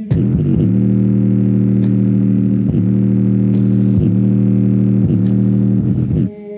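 Bass-heavy electronic music played loud through a JBL Charge 4 portable Bluetooth speaker, a sustained deep bass line that changes note a few times, its passive radiators pumping with the bass.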